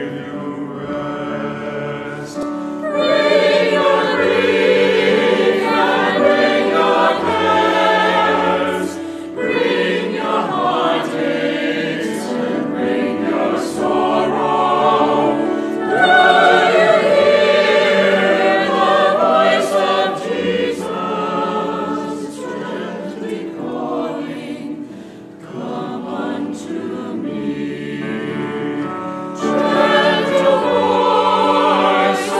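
Mixed church choir singing in parts, in phrases that swell louder about three seconds in and again at about sixteen seconds, with a quieter stretch near the end.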